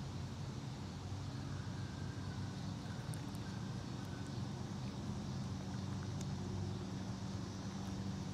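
Steady low hum of a running motor, unchanging throughout.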